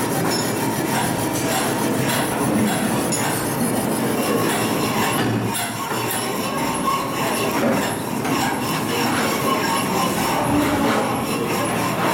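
Continuous loud mechanical noise with high metallic squealing.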